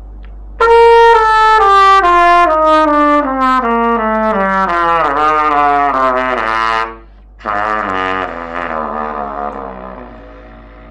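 Trumpet played in a descending run of separate notes, stepping down from the middle register into the low register, demonstrating low playing. It breaks off briefly just before the seventh second, then a second low passage follows and fades near the end.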